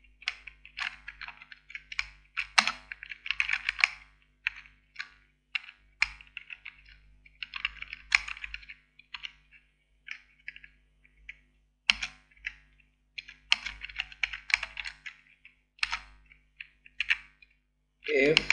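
Typing on a computer keyboard: runs of quick keystrokes broken by short pauses.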